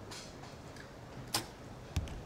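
A compound bow shot: one sharp crack as the string is released, about a second and a third in, then a second short knock just over half a second later, the arrow striking the target.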